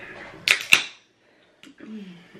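Aluminium can of LaCroix coconut sparkling water opened by its pull tab: two sharp cracks about a quarter second apart, then a brief hiss of escaping gas.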